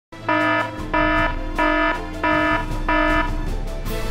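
A buzzy electronic alarm tone pulsing five times, about every two-thirds of a second, over a low steady hum.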